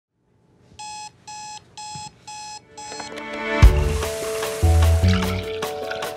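Digital alarm clock beeping: five short, evenly spaced beeps about two a second. Then music with a bass beat comes in.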